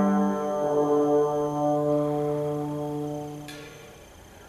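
Brass choir holding a sustained chord, its bass note stepping down about half a second in, then fading away until it stops about three and a half seconds in with a short click, leaving the hall's reverberation.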